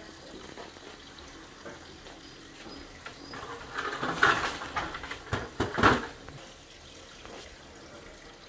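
Water pouring and dripping down through a leaking ceiling from the deck above, a steady faint splashing, with louder splashes and a few knocks between about four and six seconds in.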